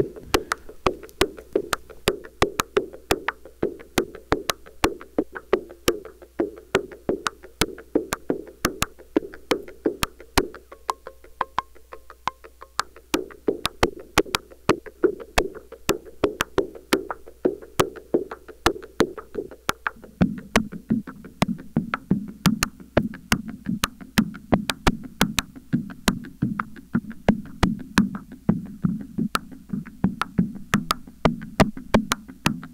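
Modular synthesizer percussion: a cross-modulated Make Noise DPO sound sliced by an FXDf six-band fixed filter into drum-like voices through an Optomix, sequenced by a René sequencer into a steady pattern of short hits, several a second. The hits drop lower in pitch about two-thirds of the way through, as parameters on the DPO are sequenced for variation.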